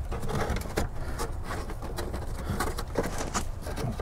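Glove box liner being worked out through the metal dash opening of a 1967–72 Chevy truck with a plastic pry tool: irregular scraping, rubbing and small clicks as its edges catch and slip past the metal.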